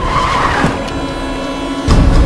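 An SUV's tyres skidding and screeching under hard braking for about the first half second, followed by a steady ringing tone, with a sharp loud hit near the end.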